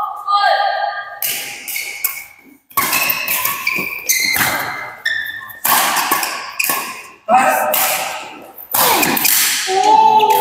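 Badminton doubles rally: rackets striking the shuttlecock about eight times, a second or so apart, each hit sharp and echoing in the hall.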